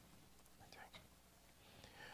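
Near silence with faint whispered speech, in short bits about half a second in and again near the end.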